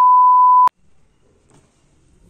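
A steady test-tone beep, the kind played with colour bars as an editing transition effect. It lasts a little under a second and starts and cuts off abruptly with clicks.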